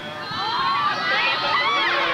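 A crowd of college students shouting and hollering all at once, many high voices overlapping, swelling within the first second and staying loud.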